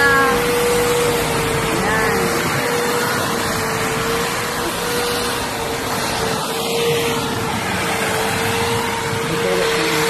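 Corded electric hedge trimmer running continuously, a steady motor hum that wavers slightly in pitch.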